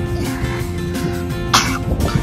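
Background music with steady sustained tones, and one short cough about one and a half seconds in.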